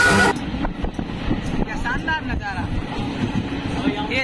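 Passenger train running, a steady low rumble heard from inside the carriage. Background music cuts off just after the start.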